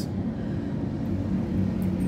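A steady low hum over an even background rumble, with no single event standing out.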